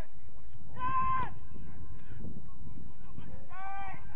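Men shouting during a football match: a loud, drawn-out call about a second in and another near the end that falls in pitch, over a steady low rumble.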